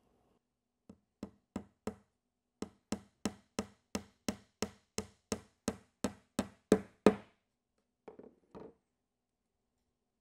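A small hammer tapping a one-inch nail through the wooden bottom bar of a Langstroth hive frame into its end bar: about eighteen light strikes at roughly three a second, growing louder as the nail is driven home, the last two the hardest. A couple of faint knocks follow near the end.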